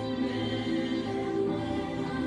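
Choral gospel music: several voices singing long, held notes together.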